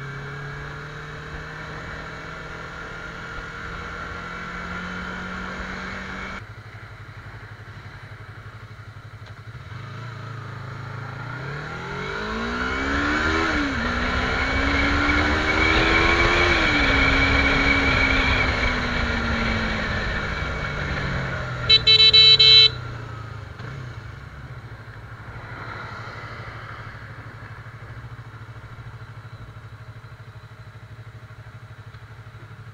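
Sport motorcycle engine running under way, then accelerating with its pitch climbing, dipping at a gear change, climbing again and falling away as it slows, with wind noise at speed. A loud vehicle horn blasts once for about a second about two-thirds of the way through, and a low engine sound follows.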